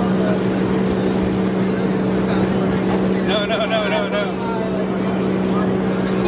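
Steady low mechanical hum over a constant outdoor background noise, with a short burst of voice about three seconds in.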